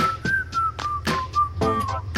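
Background music: a whistled melody stepping between notes over a steady beat of rhythmic strummed chords.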